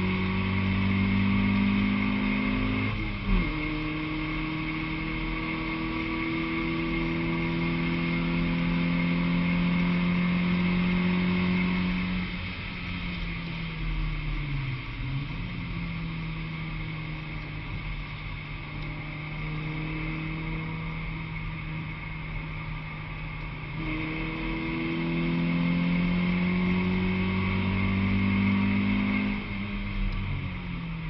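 Honda Civic track car's four-cylinder engine heard from inside the cabin under hard acceleration, its note climbing slowly, with a sharp gear change about three seconds in. Around twelve seconds in it eases off to a quieter, lower note, dips briefly a few seconds later, then pulls hard again near the end, over a steady hiss of road spray from the wet track.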